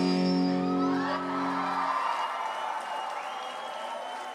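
A rock band's final chord rings on and fades, then stops about halfway through. The audience cheers and whoops over it and after it.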